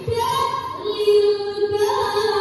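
A young woman's solo voice, amplified through a microphone, chanting a melody in long held notes, with a rise in pitch near the end.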